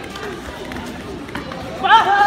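Voices and shouting from people at a taekwondo sparring bout. There is a single sharp smack about a second and a half in, and a loud rising shout near the end.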